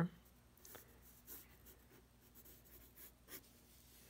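Faint scratching of a mechanical pencil's graphite on sketchbook paper: several short, light strokes.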